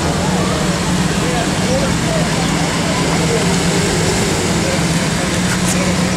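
Lamborghini Gallardo V10 idling steadily at the kerb, a low even hum under general street noise.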